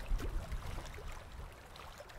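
Faint low rumble with background hiss, strongest in the first second, then easing off.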